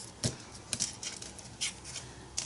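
Jigsaw puzzle pieces being handled on a tabletop: a few light taps and scrapes as pieces are pushed together and picked up.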